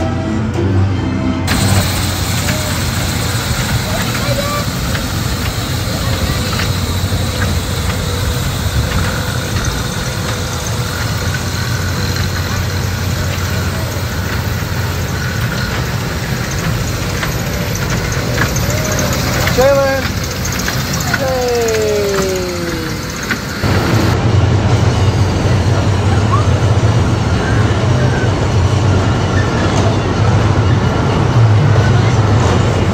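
Busy amusement-park ambience of voices and music, with a couple of falling tones about twenty seconds in.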